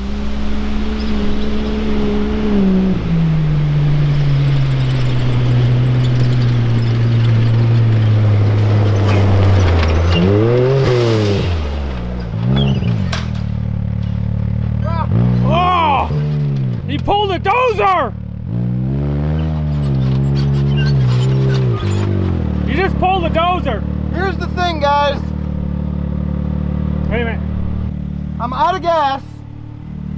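Can-Am Maverick X3 turbo side-by-side engine on a gravel road. Its note drops a few seconds in and keeps sinking as the machine slows, then rises and falls in several revs as it turns around. After that it settles to a steadier low running note with short blips of throttle.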